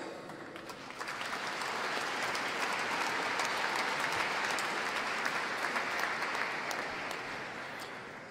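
Audience applauding, with many hands clapping. The applause builds about a second in, holds steady and tapers off near the end.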